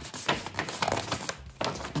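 A sheet of paper being folded in half by hand, rustling and crinkling in a quick run of sharp crackles.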